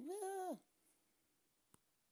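A cat meows once, briefly, its pitch rising then falling. A single faint click comes later.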